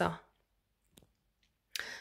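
A woman's chanted light-language syllable trails off, followed by a pause broken by a single short click about a second in; the next sung syllable begins with a hiss near the end.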